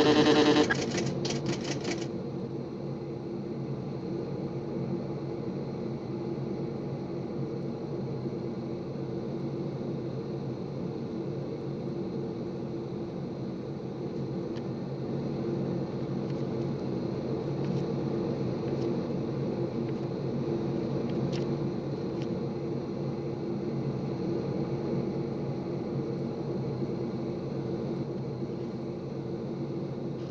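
Steady drone of a B-52 bomber's engines heard inside the aircraft cabin, with a few faint clicks in the middle. It opens with a loud electronic tone from the CRM 114 radio receiver that cuts off under a second in, followed by a brief run of rapid clicks.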